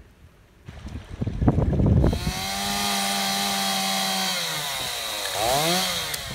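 Two-stroke chainsaw cutting a flat notch into a wooden fence post as a seat for a rail. After some uneven noise it settles into a steady high-pitched run about two seconds in, holds for about two seconds, then eases off, with a brief rise and fall in pitch near the end.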